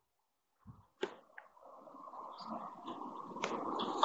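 Faint room noise during a pause, with a sharp click about a second in and a couple of smaller clicks later.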